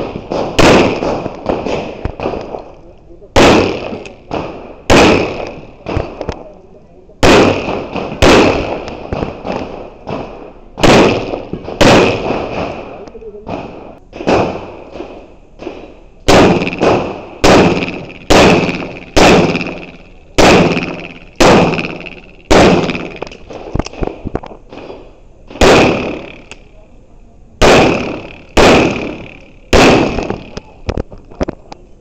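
Semi-automatic pistol fired in a string of shots, roughly one a second with some quick pairs, each shot ringing with echo off the surrounding concrete walls of the range bay.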